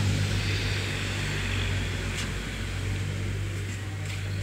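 Street traffic: a vehicle engine running with a steady low hum under a wash of road noise, easing off slightly toward the end.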